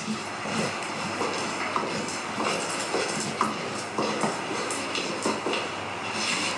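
A wooden stick stirring thick corn dough (ewokple) in an aluminium pot, a steady scraping with light irregular knocks against the pot. It is stirred hard so that no lumps form as the dough cooks.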